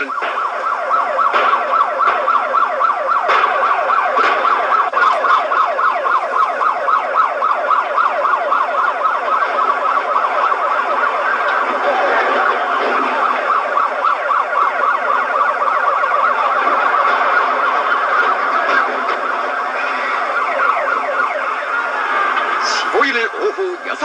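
A siren sounding continuously, its pitch sweeping up and down in quick repeated cycles.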